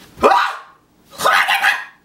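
Two loud, harsh, bark-like cries, the first short with a quick rise in pitch, the second a little longer about a second later.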